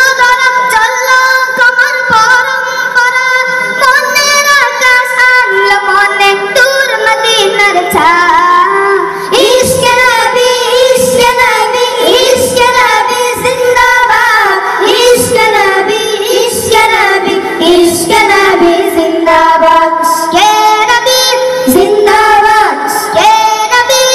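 A group of boys singing an Islamic song together in unison into handheld microphones, their voices amplified through a PA system, with long held and gliding notes.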